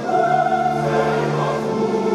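Voices singing an anthem together with instrumental accompaniment, in long held notes.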